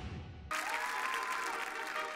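Audience applause starts suddenly about half a second in, over music with one high note held for about a second. Before it, the tail of a theme jingle fades out.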